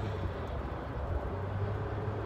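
Steady low hum of a car, heard from inside its cabin.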